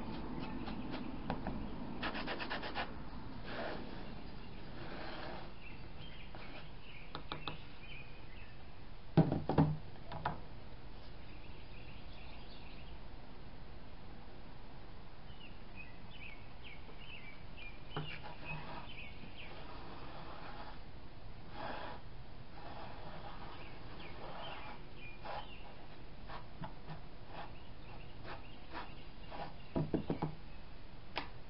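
A stick scraping and rubbing as it spreads white acrylic paint over a canvas, in short strokes, with a few sharp knocks about nine seconds in. Birds chirp faintly now and then.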